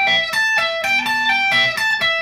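Electric guitar playing a fast pentatonic lead lick high on the neck, around the 15th and 17th frets: a quick run of picked and pulled-off single notes, about six a second, played at full speed.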